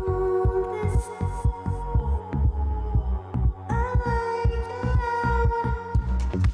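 Background electronic music: a fast, regular bass beat under held synthesizer chords, changing to a new chord a little past halfway.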